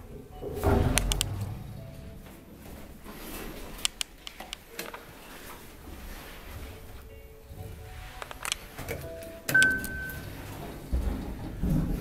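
Inside a small elevator car: a low rumble with knocks about a second in, scattered sharp clicks, a short high electronic beep near ten seconds and another low rumble near the end, over faint background music.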